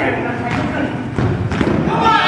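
Several dull thuds of an indoor soccer ball being kicked and hitting the hard gym floor, with players' voices in the background.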